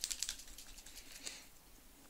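Faint, rapid light clicks and a soft rustle of hands handling paper and craft supplies on a countertop, dying away after about a second and a half.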